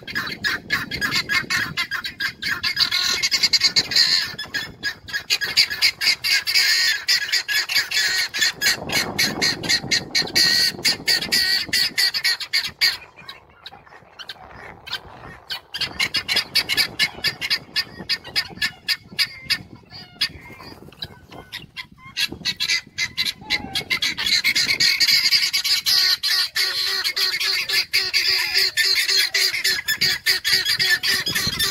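Helmeted guineafowl calling: a rapid, harsh, repeated chatter of many calls a second. It eases off about halfway through and builds up loud again for the last few seconds.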